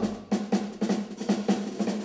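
Live band's drum kit playing a quick instrumental fill of rapid, even snare and drum strokes, with bass notes sounding under it.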